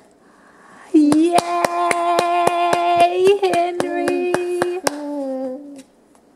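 Hands clapping steadily, about four claps a second, while a voice sings one long held "yaaay" on a nearly steady note. The clapping stops near the end, and the voice holds on a little lower for another second before cutting off.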